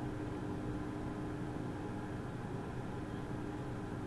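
Steady low hum and hiss of room tone, with a faint steady tone that cuts off shortly before the end.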